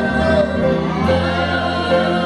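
Gospel duet: a woman and a man singing together into microphones, holding long notes over instrumental backing with a steady bass.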